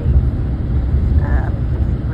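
Steady low rumble of road and engine noise heard from inside a moving car on a highway, with a brief voice about a second in.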